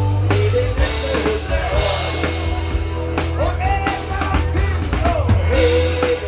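Live rock band playing: drum kit, bass guitar and electric and acoustic guitars, with singing over them.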